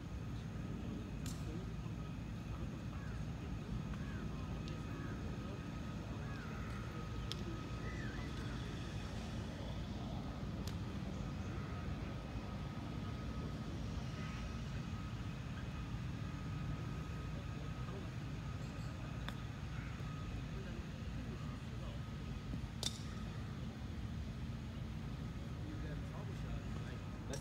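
Outdoor ambience: a steady low rumble with a faint steady high hum, faint distant voices, and a few sharp clicks, the loudest near the end.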